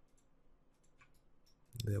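A handful of faint, scattered clicks from a computer mouse and keyboard as the user works in 3D software.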